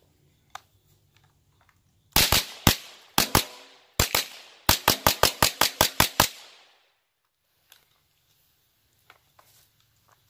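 Mossberg Blaze-47 .22 LR semi-automatic rifle being fired in quick strings: about four shots, two short pairs, then a rapid run of about eleven shots at roughly six a second, stopping about six seconds in.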